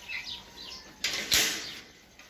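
Small birds chirping, then about a second in a loud rustling burst with a sharp thump that lasts under a second.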